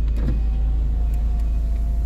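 Steady low engine rumble of heavy construction machinery at work, with a faint thin whine above it that drifts slightly lower in pitch.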